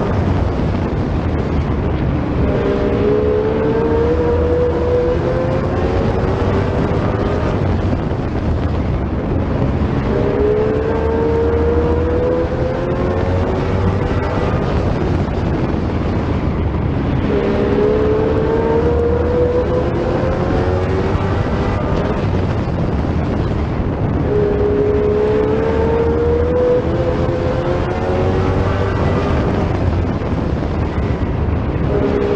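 Sportsman stock car's engine at racing speed, heard from on board. The pitch climbs four times as the car accelerates down each straight, and drops back as it lifts for the turns.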